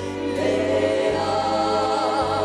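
Choral music: a choir singing held notes. A new chord begins about half a second in, and a higher voice with vibrato enters past the middle.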